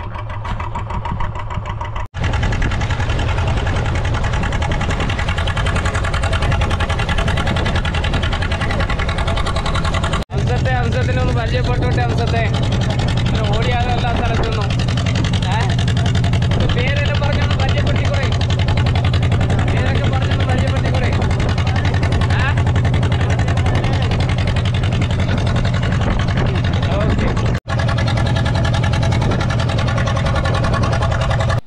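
A boat's engine running steadily with a constant low hum, with people's voices heard over it for a stretch in the middle. The sound breaks off briefly three times.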